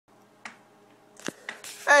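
A few sharp clicks over a faint, steady background hum, then a voice starts a greeting, 'Hey', near the end.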